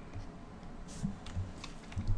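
A few faint, scattered clicks and taps, irregularly spaced, of the kind made working a stylus, mouse or keyboard at a desk.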